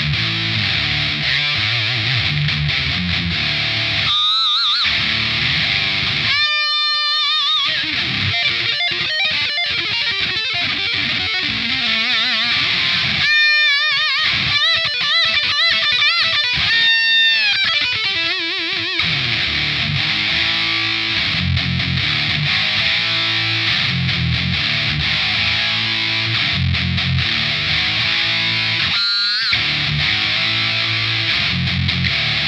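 Heavy metal playing on an electric guitar with DiMarzio D-Activator X pickups through an EMMA PisdiYAUwot distortion pedal set to full gain and minimum mids, for a scooped, high-gain modern metal tone, into a Line 6 Spider Valve MKII amp. Low rhythmic riffing opens and closes the passage; in the middle, high lead notes are held with wide vibrato.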